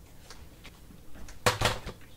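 A scoring board set down on a tabletop: light handling rustle, then a quick pair of knocks about a second and a half in as it lands.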